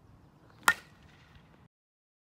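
Softball bat striking a pitched softball once, about two-thirds of a second in: a single sharp crack with a brief ringing ping.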